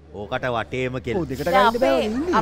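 Speech: a person's voice talking on stage, with a short hissing sound about three-quarters of the way through.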